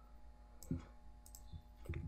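Two faint computer mouse clicks, about a second apart, over a low steady hum.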